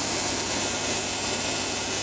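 Alternator-driven Tesla coil rig running: a steady, unchanging mechanical noise with a high hiss and a faint low hum underneath.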